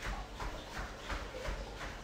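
Bare feet thudding on a foam floor mat while jogging on the spot, an even beat of about three footfalls a second.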